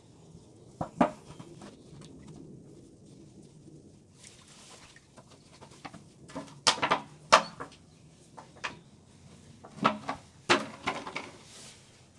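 A thin plastic container crackling and clicking in irregular spurts as it is flexed by hand to work out a pepper plant's dense root mass, with a short rustle partway through. The loudest clicks come in two clusters, about seven and ten seconds in.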